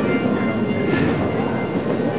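Bagpipes playing a processional, their steady tones partly buried under an even wash of noise.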